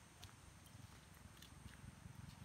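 Near silence: faint outdoor background with a low rumble and a few faint, scattered clicks.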